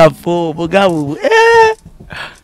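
A man's voice in drawn-out, sliding exclamations that end in a short, held high-pitched cry about a second and a half in, then stop.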